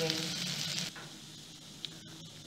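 Pork sizzling as it dry-fries in a pot, stirred with a wooden spatula. The sizzle cuts off suddenly about halfway through, leaving a much fainter hiss.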